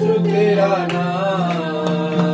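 A worship song sung to a rhythmic accompaniment: a voice carrying a sung melody over a steady held low note, with strummed or struck strokes about three times a second.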